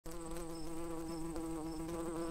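Buzzing bee sound effect for an animated cartoon bee: one steady droning pitch that wavers slightly, with faint high pings about twice a second.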